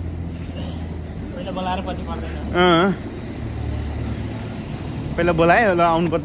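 Steady low rumble of road traffic on a street, with a man's voice calling out in short wavering sounds without clear words; the loudest call comes a little under three seconds in, and more follow near the end.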